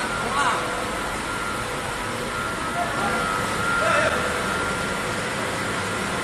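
Steady hiss and hum of powder coating booth machinery, the extraction fans and spray air, with a thin steady whine running through it. Two brief calls from voices stand out, about half a second in and again about four seconds in.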